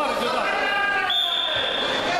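Voices in a large, echoing sports hall, then a high steady tone for about the last second.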